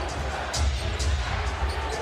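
Basketball dribbled on a hardwood court, a few sharp bounces about half a second apart, over arena music with a deep, steady bass.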